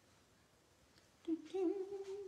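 A woman humming one steady, held note, starting a little after the first second.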